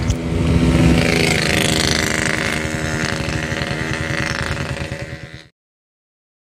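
Vehicle engine running steadily while under way, with rushing wind and road noise. It is a little louder about a second in and cuts off suddenly near the end.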